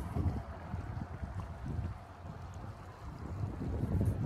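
Wind buffeting the microphone in uneven low gusts, easing off about halfway through and picking up again near the end.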